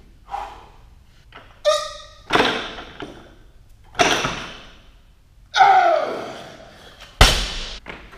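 Loaded Olympic barbell with rubber bumper plates hitting the rubber gym floor in a few heavy thuds, the last one the sharpest and loudest near the end. A lifter's short shout comes just before the first thud.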